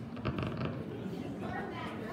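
A short creak made of a quick run of clicks, heard over a low murmur of people in a hall.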